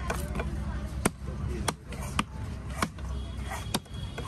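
Cleaver chopping through goliath grouper pieces on a wooden log block: about six sharp chops, irregularly spaced roughly one every half second to a second, over a steady low background rumble.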